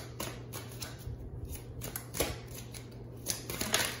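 Tarot cards being handled and shuffled: a run of quick papery flicks and taps, coming thickest near the end.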